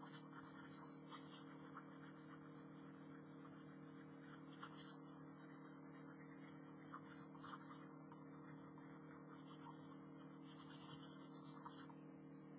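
Faint graphite pencil scratching on sketchbook paper in repeated short shading strokes, over a steady low hum.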